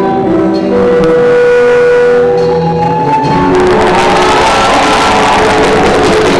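Live rock band with electric guitars and a drum kit playing: held guitar notes at first, then the full band comes in with a thicker, louder sound about three seconds in.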